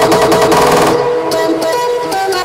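Hardstyle electronic dance music: the driving kick beat runs into a rapid drum roll about a quarter of the way in. The beat then drops away, leaving sustained synth chords.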